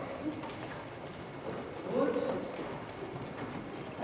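Hoofbeats of several horses moving together on the sand footing of an indoor riding arena, a dense, irregular patter.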